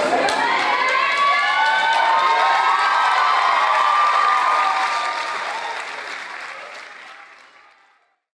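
A theatre audience applauding and cheering, many voices shouting and whooping over the clapping. It fades away over the last few seconds to silence.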